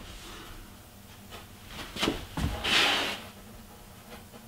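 Fingertip rubbing joint compound into a nail hole on a primed wooden drawer front: a brief scraping rub just under three seconds in, with a couple of soft knocks just before it.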